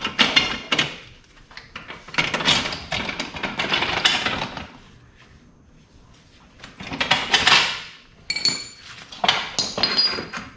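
Metal parts knocking and clinking while a motorcycle rear wheel is handled and positioned in the swingarm, with a longer scraping stretch in the first half. Short, high metallic rings come near the end.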